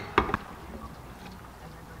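Two sharp metal clicks, about a sixth of a second apart near the start, as the aluminium triple hand injector is seated in its clamp jig; then only faint room tone.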